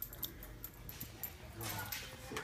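A dog coming on recall, with a scatter of short, light clicks and jingles in the first second or so.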